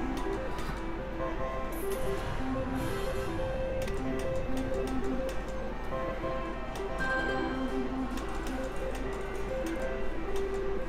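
Mechanical-reel slot machine spinning twice, with a beeping electronic tune in short stepped notes and ticks and clicks as the reels turn and stop.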